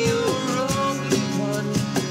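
Acoustic band playing: several acoustic guitars strummed over a steady cajón beat.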